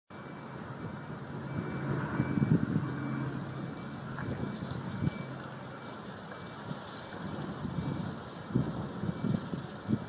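Fire engine's diesel engine running as the truck manoeuvres, a low steady rumble that swells about two seconds in, with a few short low thumps near the end.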